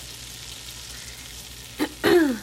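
Butter frothing in a hot nonstick skillet, a steady soft sizzle as squash and zucchini slices go into the pan, with one brief click near the end.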